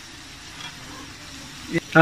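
Spiced tomato masala gravy frying and bubbling in an aluminium pressure cooker pot, a steady low sizzle; a single short knock near the end.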